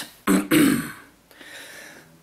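A man clearing his throat in two short bursts, one right after the other, in the first second.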